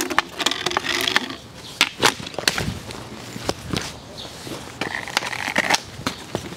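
Irregular knocks, clacks and scraping rustle of hard objects being handled or bumped, loudest about two and two and a half seconds in.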